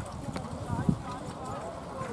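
Hooves of carriage horses going through an obstacle, irregular hoofbeats on turf, with one sharper thump just under a second in. People talk in the background.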